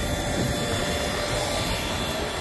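A farm tractor engine idling steadily: a constant even hum with a faint steady high tone, and nothing starting or stopping.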